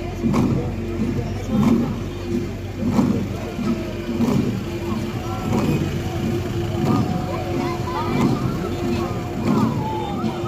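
Many Garo long drums (dama) beaten together in a steady, slow beat, with strong strokes a little over a second apart. Voices rise over the drumming from about halfway in.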